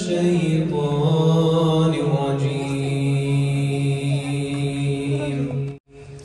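A man's solo voice in a slow, melodic Quranic recitation (tilawat) into a handheld microphone, holding long drawn-out notes. The voice breaks off for a moment near the end.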